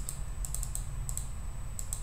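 Light clicking from a computer being operated: a quick run of clicks about half a second in, then clicks in close pairs near the middle and again near the end, over a faint low hum.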